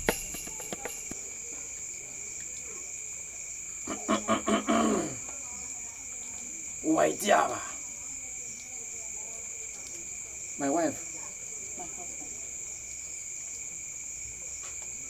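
Crickets chirping steadily throughout, with three short murmurs from a person's voice at about four, seven and eleven seconds in.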